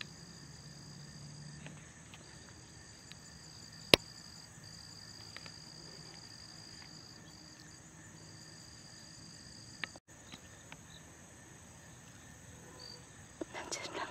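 Insects trilling in a steady, high-pitched chorus, the trill breaking off briefly now and then. A single sharp click about four seconds in.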